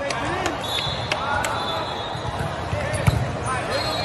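Echoing volleyball-hall din: many voices of players and spectators, with the sharp smacks of volleyballs being struck on the courts. The loudest is one hard hit about three seconds in.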